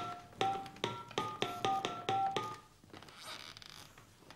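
Touch-tone keypad beeps as a number is dialed on a cordless phone handset: a quick run of about nine short two-note tones over the first two and a half seconds, then quiet.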